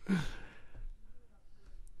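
A man's short breathy chuckle close to the microphone, falling in pitch and lasting under a second, followed by a quiet pause.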